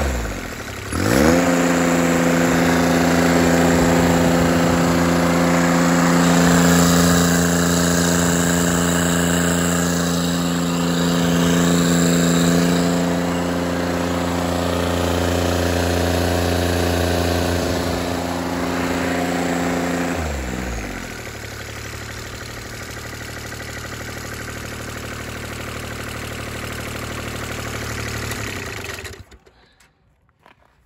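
1983 Kubota G6200's small three-cylinder diesel, fitted with a makeshift turbocharger, running hard. The revs dip sharply at the start and climb straight back, then hold steady and high. About two-thirds through the revs drop to a lower idle, and the sound cuts off about a second before the end.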